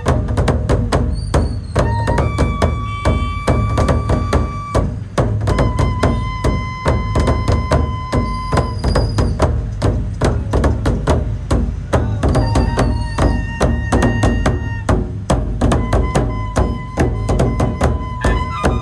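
Several large barrel drums beaten with sticks in a fast, steady, driving rhythm by a processional band. Long held notes, each lasting a couple of seconds and changing pitch from one to the next, sound over the drumming.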